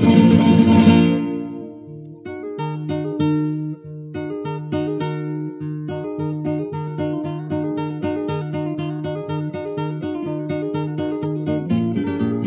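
Solo flamenco guitar playing a cartageneras introduction: rapid strummed chords that ring out and fade within the first two seconds, then picked melodic runs over a repeating bass note.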